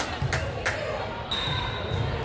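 Volleyballs smacking against hands and the hardwood gym floor three times in the first second, echoing in a large gym, over background chatter. A steady high tone comes in over the last part.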